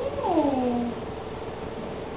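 Standard poodle whining: one drawn-out whine, falling in pitch, lasting just under a second.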